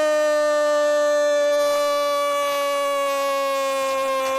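A radio football commentator's long held goal cry, "goool", sustained loudly on one steady note that sinks slightly in pitch.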